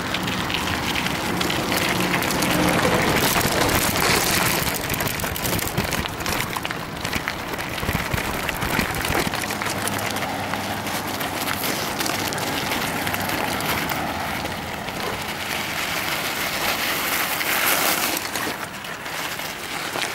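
Mountain bike tyres rolling and crunching over loose gravel and stones, a continuous rough noise that rises and falls with the bumps of the track.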